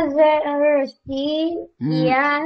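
A high-pitched voice reading vowel-marked Arabic words aloud from a Quran reading chart, drawing each word out in a sing-song way; two long phrases, with a third beginning near the end.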